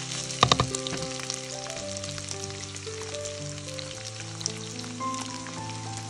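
Chicken livers and sliced onions sizzling steadily as they fry in a pan. A spatula knocks and scrapes against the pan a few times about half a second in.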